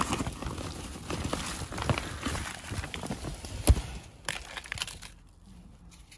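A hand rummaging through a bag of frozen jelly ear (wood ear) mushrooms: irregular crackling and crinkling of the bag and the stiff, icy fungi, with one sharp click about three and a half seconds in. It dies down after about five seconds.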